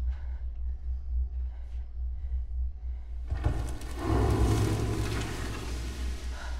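Horror film soundtrack: a low, steady rumbling drone, joined about three seconds in by a loud, noisy swell of sound design that builds and holds to the end.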